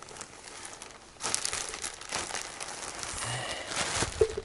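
Plastic wrapping of a toilet-paper multipack crinkling as it is pulled out from under a duvet and handled, with the bedding rustling. Quieter rustling at first, then loud, dense crinkling from about a second in.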